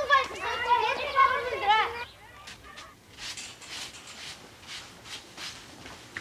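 Children's high voices with a wavering pitch for about two seconds, then a quieter run of light, sharp taps.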